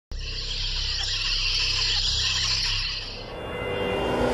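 Channel intro sound effect: a steady high hiss over a low drone, fading out about three seconds in.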